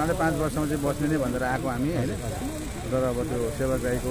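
A man talking in close-up, over a steady low engine hum.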